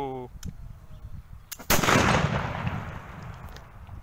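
A single shot from a black-powder pistol a little under two seconds in, sudden and loud, its echo fading away over the next two seconds.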